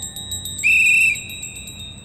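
Synthesized dramatic sting from a TV serial's background score: a high, steady shimmering tone with a rapid ticking pulse, and a louder, piercing high tone lasting about half a second near the middle.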